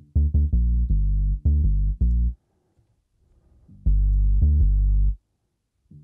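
Synth bass line playing in two runs of short, repeated low notes, each about a second or two long, with a pause of about a second and a half between them. It is heard dry, as the 'before' version without the plugin's added stereo harmonics.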